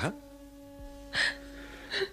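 A man's short, gasping breath about a second in, with a fainter one near the end, over soft background music holding long, steady notes.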